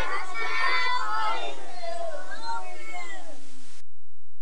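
Several young children's high voices calling out and chattering over one another, in a sing-song way, until they cut off suddenly just before the end.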